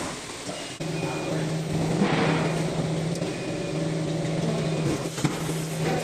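Automatic roll-film bowl sealing machine running: a steady low hum comes in about a second in, with a short rush of noise about two seconds in and a sharp click near the end.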